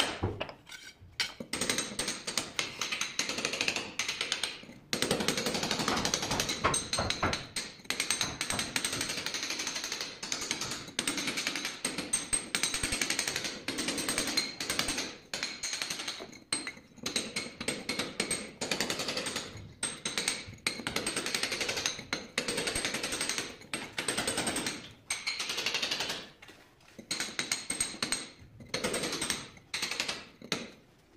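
Chisel knocking out the bottom strip of ceramic tile and tile adhesive at the base of a wall: rapid hard strikes in bursts of several seconds with short pauses between them.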